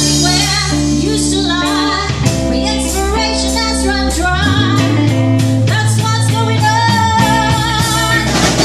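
Live band music: a woman singing a held, wavering melody over electric guitar and bass, with sustained bass notes and light drums.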